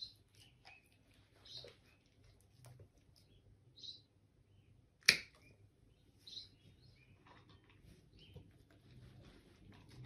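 Small dog nail clippers snipping a dog's nails: several light clicks and one loud, sharp snip about five seconds in.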